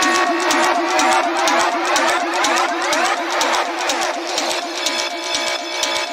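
Electronic dance music mixed live by a DJ on a DJ controller, with a steady fast beat. A sweeping effect rises and falls through the middle, and the track's sound changes to steadier held tones about four and a half seconds in.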